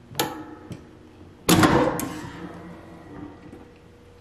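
Clamshell heat press opened at the end of a press: a click as the handle unlatches, then a louder metallic clunk about one and a half seconds in as the upper platen swings up, ringing briefly before it fades.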